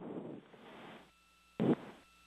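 Radio hiss on the mission audio loop just after a call-out, fading away within about a second, then a short clipped burst near the end.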